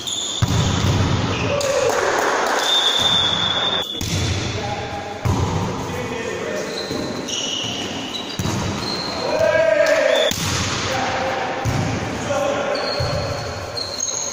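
Volleyball rally in an echoing sports hall: the ball is struck and knocks off hands and floor, shoes squeak briefly on the court, and players shout calls, loudest about ten seconds in.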